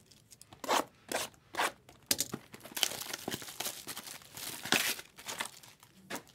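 Foil wrappers of Bowman Chrome trading-card packs being torn open and crinkled by hand, in a string of short, irregular rips and rustles.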